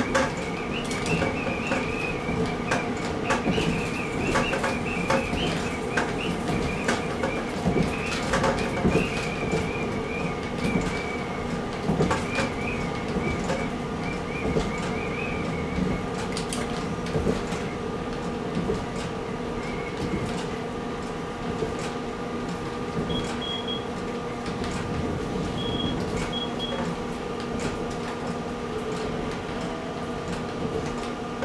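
KiHa 40 diesel railcar running along the line, heard from inside the cab: a steady engine hum with irregular clicks and knocks from the wheels on the track. A high wavering tone rides over it through the first half and fades out about halfway.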